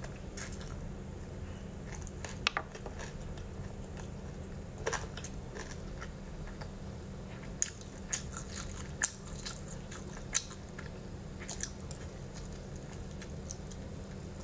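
Close-up eating sounds: a person biting and chewing sticky, glazed meat off the bone, with scattered short crunchy clicks and smacks, the sharpest about two and a half seconds in and again around nine to ten seconds. A steady low hum lies underneath.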